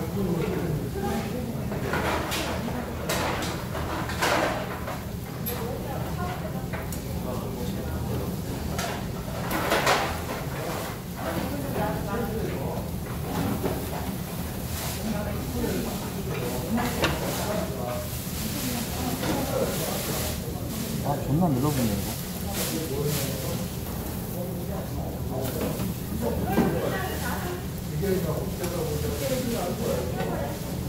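Low voices talking over a steady low hum, with scattered sharp clicks of metal tongs and scissors working beef on a charcoal grill.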